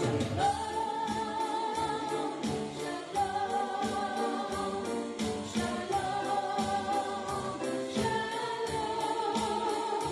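A woman singing a gospel worship song into a microphone in long held phrases, with a steady drum beat and piano accompaniment.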